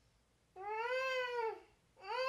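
A woman's single drawn-out, high-pitched whimpering moan that rises and then falls, starting about half a second in and lasting about a second: feigned distress, put on as sleep paralysis.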